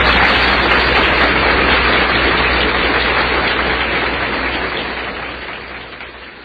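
Audience applauding, fading out toward the end.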